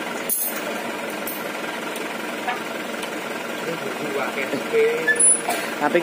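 Diesel engine of a light dump truck idling steadily while the truck stands after unloading, with a single sharp knock just after the start. A man's voice speaks briefly near the end.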